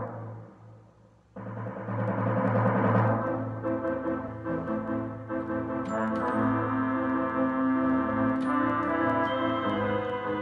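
Yamaha electronic keyboard playing a layered arrangement of a theme tune. A loud chord struck just before fades away over the first second, then about a second and a half in the music resumes with sustained organ-like chords, melody and bass.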